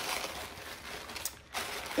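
Handling noise of a package being brought out: packaging rustling, with a few light knocks.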